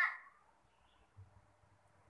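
A high-pitched voice trailing off at the very start, then quiet room tone with a faint low hum that comes in about a second in.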